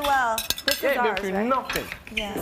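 A woman's voice, drawn out and rising and falling, mixed with a run of sharp clicks and clinks.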